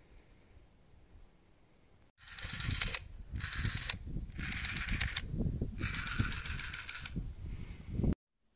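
Toy submachine gun firing its rapid rattling shot sound in four bursts, starting about two seconds in, the last burst the longest.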